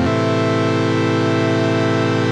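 Native Instruments Massive software synthesizer sounding a held note of the pad patch under construction: a brash saw wave layered with a chordy, organ-like wavetable, unfiltered. It sustains at a steady level without pumping, because the sidechain compressor is switched off.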